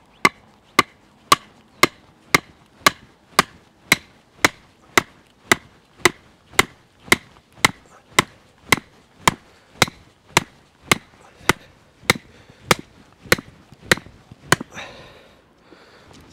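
A sharpened wooden post being hammered into the ground: a long run of steady, evenly spaced blows, about two a second, stopping near the end.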